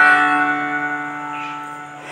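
Guitar accompaniment holding one chord at the end of the intro, letting it ring and slowly fade away.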